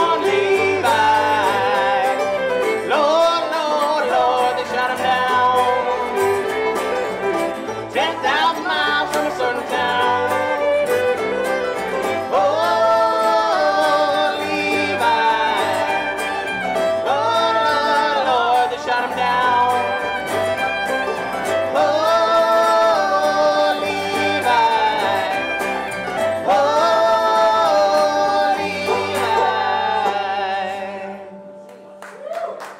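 Live bluegrass band playing an instrumental passage: fiddle carrying a sliding melody over banjo, guitar and bass guitar.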